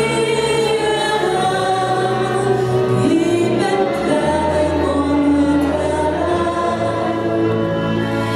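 A Hungarian nóta (popular song) sung by a woman over a band of violin, double bass and clarinet, playing steadily.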